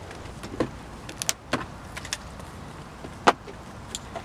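A few sharp clicks and knocks of an aluminium briefcase being handled on a table, the loudest knock about three seconds in.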